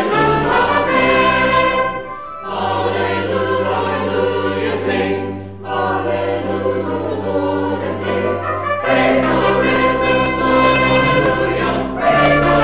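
A church choir sings a sacred anthem in parts over organ accompaniment, with long-held low organ notes underneath. There are short breaks between phrases about two seconds in and again about five and a half seconds in.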